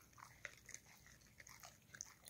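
A dog chewing a piece of oven-baked liver, heard only as a few faint, scattered crunching clicks.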